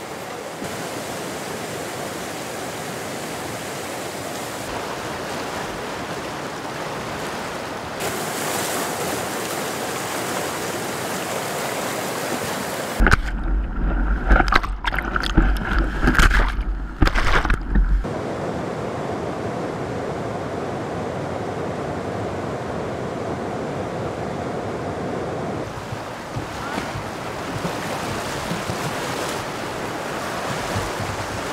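Whitewater river rushing in a steady hiss. Partway through, for about five seconds, a camera on the bow of a kayak plunging through the rapids picks up louder, irregular splashing and rumbling buffeting from the water.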